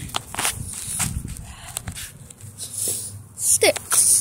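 Footsteps and handling noise on sandy ground: a string of irregular soft clicks and scuffs, with a short voice sound near the end.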